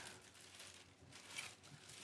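Near silence: quiet room tone, with one faint, brief sound a little after the middle.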